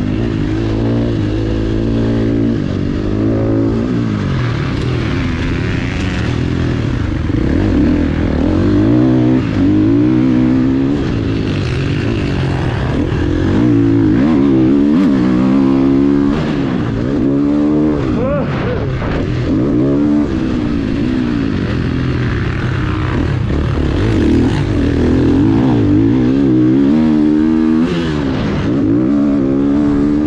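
Motocross bike engine heard from on board, revving up and dropping back over and over as the rider accelerates, shifts and rolls off around the track.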